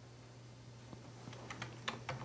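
A handful of faint computer keyboard key presses, quick clicks in the second half, over a low steady hum.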